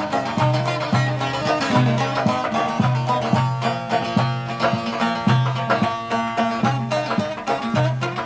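Instrumental opening of a Turkish Aegean folk dance song: a plucked-string melody over a steady hand-drum rhythm.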